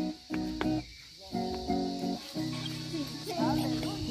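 A praise song played on a strummed acoustic guitar with sung, held notes, breaking off briefly about a second in before carrying on. A steady high cicada drone runs behind it.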